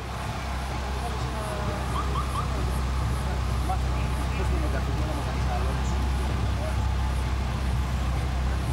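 People talking faintly in the background over a steady low rumble.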